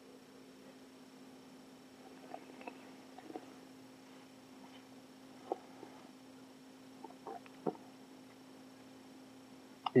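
Quiet room with a steady low hum, broken by a few faint clicks and small mouth noises as a sip of red wine is held, worked around the mouth and swallowed. The two clearest clicks come about midway and again near the end.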